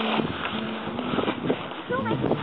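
Indistinct voices over a steady background hiss of wind and movement.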